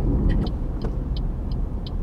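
Car cabin noise of engine and tyres on the road, with a turn-signal indicator ticking steadily about three times a second as the car nears an intersection.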